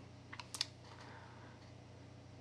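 A few faint computer keyboard clicks in the first second, then quiet room tone with a low steady hum.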